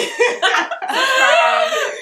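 A group of young women laughing loudly in high-pitched voices, with one long high laugh in the middle.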